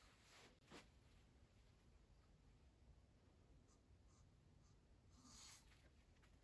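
Near silence: quiet room tone with a few faint soft rustles, one just under a second in and another about five seconds in.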